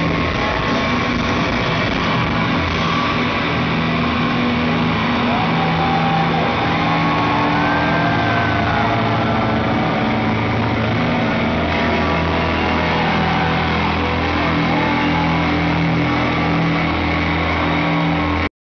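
Rock band playing live at full volume, with distorted electric guitar and long held bass notes, heard from within the audience.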